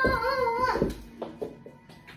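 A girl's high-pitched, wavering voice holding one sung or squealed note, which breaks off under a second in, followed by a few light knocks.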